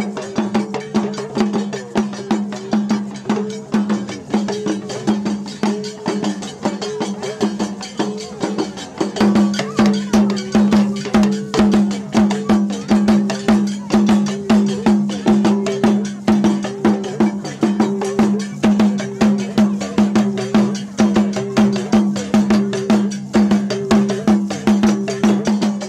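Mossi drum ensemble playing a steady rhythm of about two strokes a second: laced talking drums struck with curved sticks, their pitch bending between strokes, over a large barrel drum.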